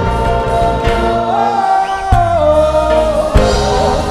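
Gospel praise team singing in harmony into microphones, with keyboard and drum accompaniment. The held vocal line slides to a new pitch midway, and sharp drum hits land about two seconds in and again near the end.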